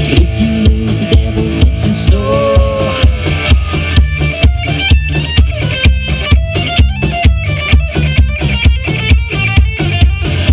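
Live rock band playing an instrumental break: electric lead guitar over a steady drum kit beat and bass guitar. The guitar holds a bent note about two seconds in, then plays a fast run of high notes through the rest of the break.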